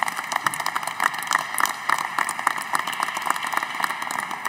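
Applause from a bench of parliamentarians: many hands clapping in a dense, steady patter.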